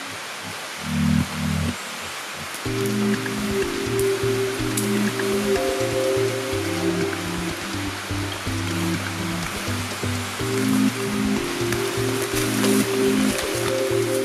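Background music of low, sustained notes over a steady hiss, filling out with more notes about three seconds in.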